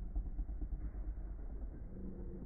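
Two metal Beyblade tops, L-Drago 105F and Pegasis 85RF, spinning on a plastic stadium floor: a steady whir of their tips running on the plastic, with faint scraping ticks and no hard clash.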